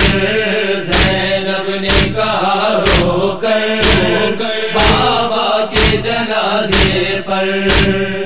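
Voices chanting a drawn-out, wordless refrain in a noha lament, over a steady beat of heavy thumps about once a second.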